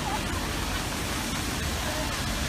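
Steady hiss of rain falling on a wet street, with faint chatter of people nearby.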